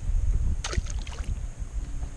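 Wind buffeting the microphone in an uneven low rumble, with a short cluster of clicks and rattles about half a second to a second in as the small fish and rod are handled.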